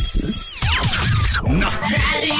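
Radio station jingle or sound effect: high electronic tones that drop away in a fast falling sweep about half a second in, then cut off abruptly and give way to music.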